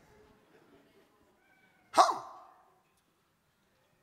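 A man's single short "huh?" about two seconds in, with a brief echo after it, in an otherwise quiet pause.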